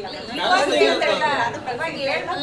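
People talking, with speech running throughout.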